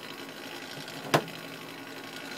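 Hot-air desoldering station blowing air steadily with a faint hum, and one sharp click just over a second in.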